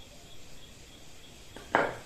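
A faint steady chirring of insects, broken once near the end by a single short, sharp knock, typical of a tool or blade set down or struck in the forge.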